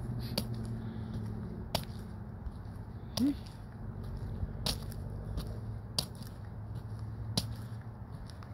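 Truck engine idling steadily. A sharp click comes about every second and a half, and a brief rising tone sounds about three seconds in.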